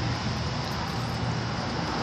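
Vending machine's suction-arm picker moving inside the cabinet to fetch an item, a steady mechanical hum.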